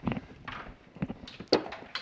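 A few light knocks and handling sounds on a plywood workbench as a handheld multimeter is set down: a knock right at the start, then faint clicks about one and one and a half seconds in.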